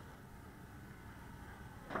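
Quiet background: a faint low rumble with no distinct sound, then the start of a man's word at the very end.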